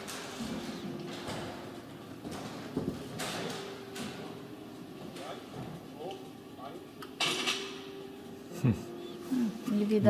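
Faint background speech over room noise, with a low steady hum and a short burst of hiss about seven seconds in.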